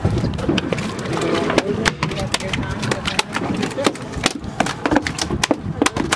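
Freshly landed mahi-mahi flopping on a boat deck: a fast, irregular run of slaps and knocks.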